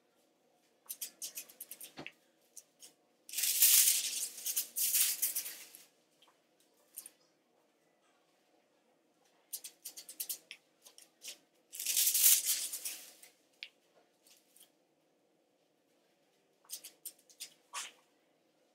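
Aluminium highlighting foils rustling and crackling as they are handled and folded against the hair, in two louder spells, with the scratchy strokes of a tail comb weaving sections of hair between them and a single sharp tap about two seconds in.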